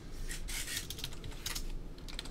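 Trading cards being handled by gloved hands on a tabletop: a run of light clicks and rustles as cards are set down, slid and picked up.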